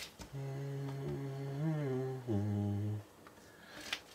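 A man humming a short, low tune of a few held notes, dropping to a lower note about two seconds in and stopping about a second later.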